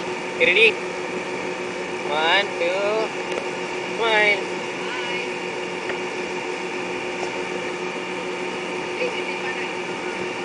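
Steady mechanical drone holding a fixed low tone, with three brief snatches of voice about half a second, two seconds and four seconds in.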